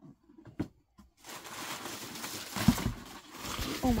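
After a second of near quiet with a couple of light clicks, rustling and handling noise on a phone's microphone as the phone is dropped, with a loud thump about two-thirds of the way through.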